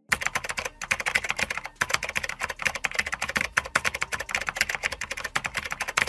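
Fast typing on a computer keyboard: a dense, uneven run of key clicks that starts abruptly.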